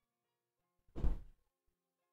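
A single thump about a second in, short and the loudest thing heard, over faint background music.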